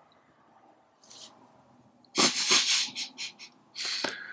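Stifled, breathy laughter: a run of short puffs of breath starting about halfway through.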